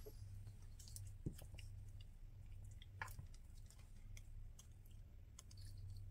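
Faint handling of small paper cutouts: a few light clicks and soft rustles, with a small thump about a second in, over a low steady hum.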